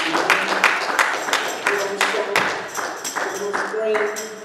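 Rhythmic hand clapping, about four claps a second, over held musical tones and voices.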